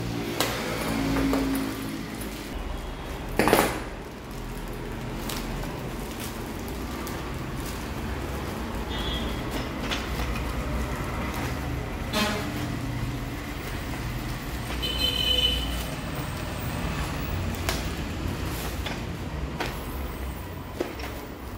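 Plastic courier mailers and a zip-lock bag rustling and crinkling as they are handled and pulled apart, with a sharp crackle a few seconds in. A steady low hum runs underneath, and a few brief high tones sound partway through.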